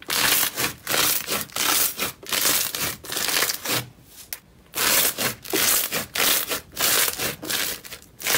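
Crunchy textured slime squeezed and pressed by hand, giving loud crackling crunches about two a second, with a short pause about four seconds in.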